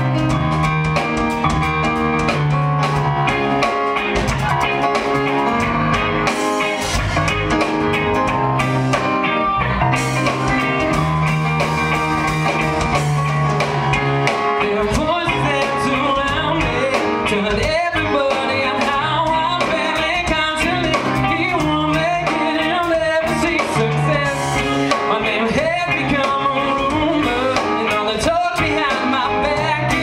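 A live rock band playing: electric guitar, keyboard, bass and drum kit, with a man's lead voice singing from about halfway through.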